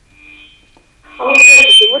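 A telephone caller's line opening on air: a faint high tone, then about a second in the caller's voice breaks in loudly over the phone line with a shrill steady whistle on the line.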